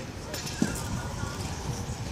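Indistinct voices of people at the trackside over a steady low rumble, with one short knock about half a second in.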